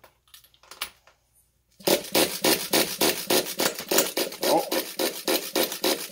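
Pull starter on a small RC nitro glow engine being yanked in quick repeated strokes, about four or five a second, starting about two seconds in: a rasping cord-and-ratchet sound as the engine, fed gasoline, turns over without firing.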